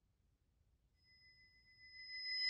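Near silence: a pause in the song, with a very faint high steady tone coming in about halfway through.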